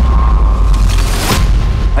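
Cinematic trailer sound design: a loud, deep sustained boom with a steady high tone held over it, and a sharp hit a little over a second in.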